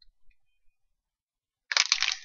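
Near silence with a few faint ticks, then about three-quarters of the way through a sudden crinkling of a clear plastic bag as the wrapped bath bomb in it is handled.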